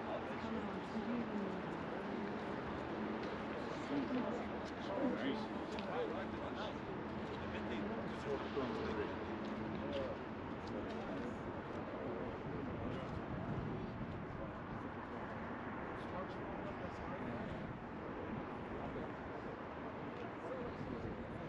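Several people talking at once, their voices overlapping into steady chatter with no single voice clear.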